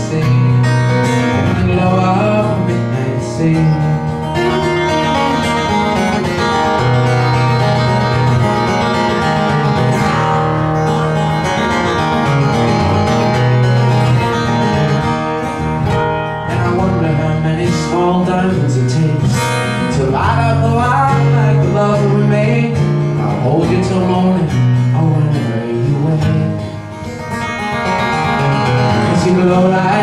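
Solo acoustic guitar playing an instrumental break in a live song, a steady bass line under a moving melody, dipping briefly in level near the end.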